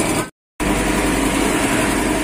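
An engine running steadily in the background, broken by a brief drop to silence about half a second in.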